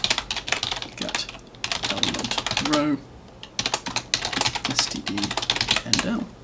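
Fast typing on a computer keyboard: a rapid, uneven run of key clicks with a short pause about halfway through.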